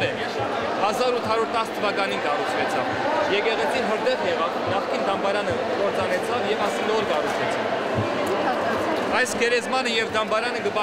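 A man speaking Armenian, continuous talk with the natural rise and fall of speech.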